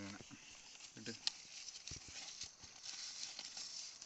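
Fresh banana leaf and a dry banana-fibre strip rustling and crackling as a banana-leaf parcel is folded and tied, heard as a faint run of irregular clicks and crinkles.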